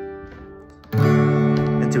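Acoustic guitar: a strummed E minor 7 chord rings and fades, then a fresh chord is strummed about a second in and rings on.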